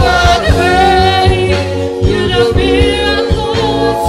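A man singing a gospel worship song into a microphone, with other voices joining in, over live band accompaniment with a steady drum beat and bass.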